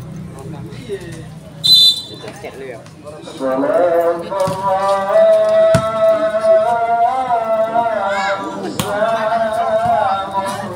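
A short, loud blast of a referee's whistle about two seconds in. From about three and a half seconds a voice sings long, held, wavering notes to the end, with a few sharp knocks under it.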